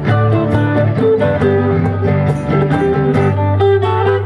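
Live band playing an instrumental: mandolin and guitars picking a quick melody over a steady drum beat, with accordion.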